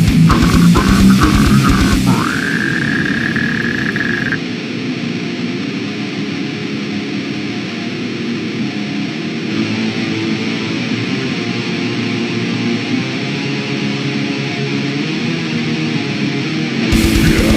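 Deathcore/beatdown metal song with drums and down-tuned guitars for the first two seconds. A high sustained note then slides up and holds for about two seconds. From about four seconds in the deep low end drops out and a quieter, thinner guitar passage carries on.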